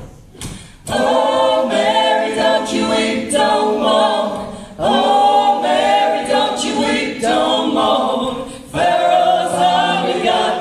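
A group of voices singing together with little or no instrumental backing, in phrases of a few seconds separated by brief breaths.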